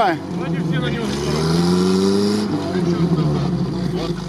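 Off-road vehicle's engine running under load in snow, climbing in revs for about a second and a half and then easing back.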